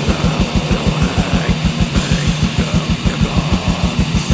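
Black/death metal band playing: distorted electric guitars over rapid, evenly spaced kick-drum beats.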